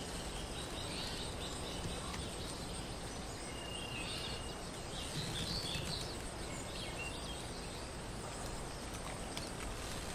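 Forest ambience: a steady hiss of background noise with scattered faint bird chirps and calls, including a short whistled note about four seconds in.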